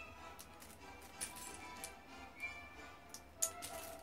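Faint background music with a few sharp clicks of plastic Lego bricks as hands rummage through and pick out pieces.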